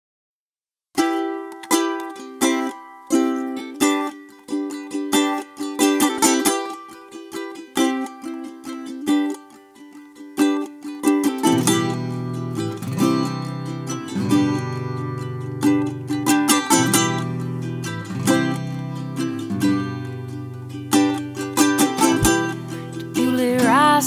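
Recorded song intro: a ukulele picked alone starting about a second in, joined by a bass line about halfway through. A voice starts singing right at the end.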